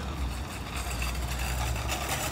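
Steady low outdoor rumble with a hiss of background noise over it, picked up on a phone microphone.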